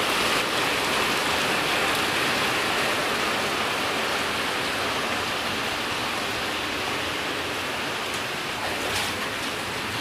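Heavy rain pouring down, a steady hiss of rain on wet pavement and standing floodwater that eases slightly in level toward the end.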